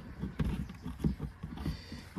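A few light knocks and rubbing from a hand working the plastic propane-tank cover on a travel trailer's tongue, as its hold-down knobs are loosened.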